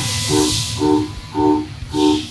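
Hiss of coolant spraying inside a CNC machining centre, strongest in the first second and rising again near the end, over background music with a steady pulse of about two notes a second.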